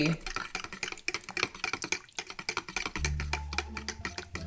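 Background music with a quick percussive clicking beat; a low steady bass tone comes in about three seconds in.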